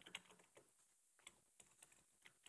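Very faint, sparse computer keyboard keystrokes: a password being typed into a dialog box, a few separate clicks with near silence between them.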